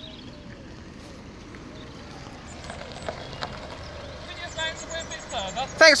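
A van drawing up along a road, its engine and tyre noise growing slowly louder, with a man's voice starting right at the end.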